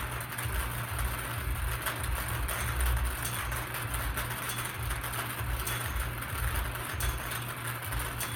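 Numbered balls tumbling and rattling inside a hand-cranked wire bingo cage as it is turned, a continuous clatter of small clicks.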